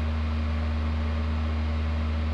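Steady low hum and hiss of a powered-up DECAPOWER XTRAMIG 200SYN inverter welder idling in stick (MMA) mode, its cooling fan running, with no arc struck.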